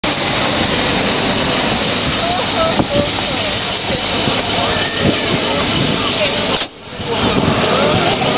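Loud, steady outdoor rushing noise, like wind on a camcorder microphone, with scattered distant voices and cries mixed in. The sound drops out briefly near the end.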